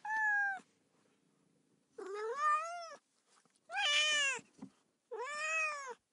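A domestic cat meowing four times in a row. Each meow lasts under a second, and most rise and then fall in pitch.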